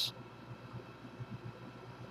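Quiet room tone: a faint steady background hum with no clear event.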